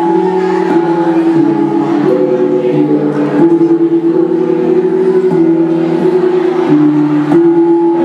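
Ensemble of Mường bronze gongs (cồng chiêng), each player striking one hand-held gong with a padded beater. Their ringing tones of different pitches, one new strike every half second to a second, overlap into a continuous interlocking melody.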